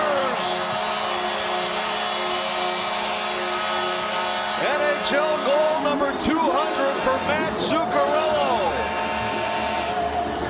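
Hockey arena goal horn sounding a long steady chord over a cheering crowd, celebrating a home goal. About halfway in, rising and falling shouts and whoops from the crowd come to the fore as the horn carries on under them.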